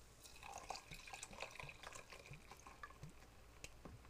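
Berliner Weisse wheat beer being poured from a bottle into a glass goblet over syrup, faintly splashing and fizzing as the head of foam builds.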